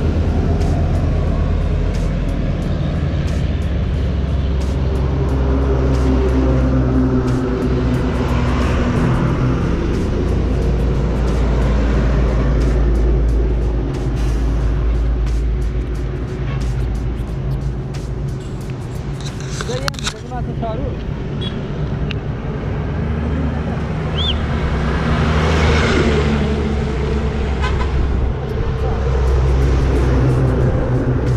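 Heavy diesel trucks passing close by on a road. A loaded lorry's engine runs loud as it goes past in the first half. Traffic noise eases through the middle, then a tanker truck's engine grows loud again near the end.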